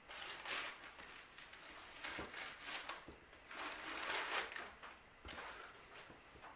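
A black plastic rubbish bag rustling and crinkling in irregular bursts as blocks of floral foam are pushed down into the bag-lined pot, with a few light knocks.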